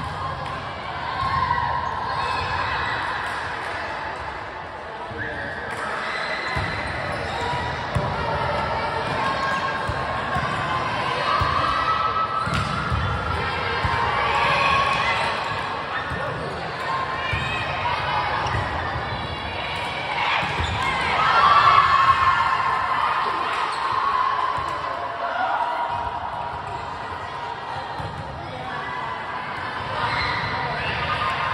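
Indoor volleyball gym: balls being struck and bouncing on the hardwood floor, mixed with players' overlapping calls and chatter, which are loudest about two-thirds of the way through.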